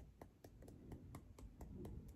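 Fingertips tapping on the side of the other hand, the karate-chop point used in EFT tapping: faint, quick, even taps, about six a second.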